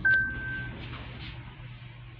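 A click, then one steady electronic beep lasting well under a second from a 2001 Mitsubishi Grandee elevator: its electronic door-close chime sounding as the doors begin to shut.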